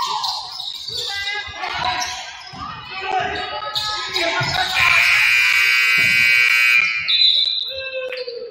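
Gym scoreboard buzzer sounding for about two seconds, starting a little before the middle, as the game clock runs out to end the third quarter. Before it come shouting spectator voices and a basketball bouncing.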